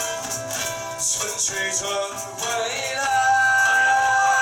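Small acoustic band playing live: strummed acoustic guitar and shaken maracas, with a long held sung or horn note coming in about two and a half seconds in.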